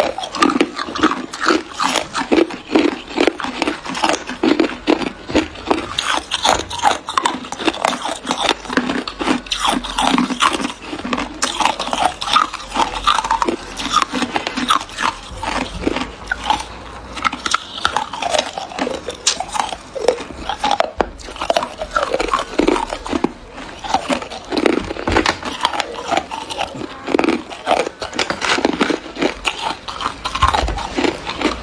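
A person biting and chewing ice close to the microphone: a steady run of sharp crunches, several a second.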